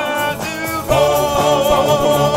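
Male doo-wop vocal group singing in close harmony. A held chord fades into a brief lull, then the full group comes in louder on a new chord about a second in, with a low bass part underneath.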